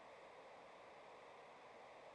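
Near silence: the faint steady hiss of an open radio channel with no one transmitting.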